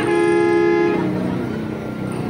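A long, steady horn-like tone with two pitches, fading out about a second in, followed by quieter outdoor background.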